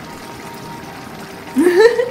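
A woman's short, wordless vocal reaction, rising in pitch near the end, as she tastes a very spicy mapo tofu sauce. Before it there is only a faint, steady hiss.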